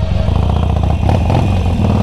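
Harley-Davidson Forty-Eight Sportster's V-twin engine running at low road speed, a steady, deep pulsing exhaust beat through a loud Screaming Eagle aftermarket exhaust.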